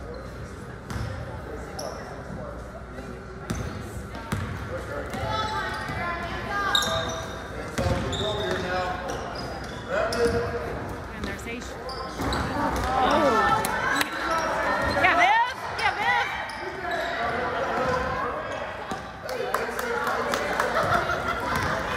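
Basketball game in a gymnasium: a ball bouncing on the hardwood court amid the calls and chatter of players and spectators, echoing in the hall. It gets louder during the second half.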